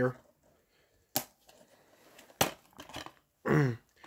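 Plastic DVD keep case being opened: two sharp plastic clicks about a second and a quarter apart as the latch and hinge snap.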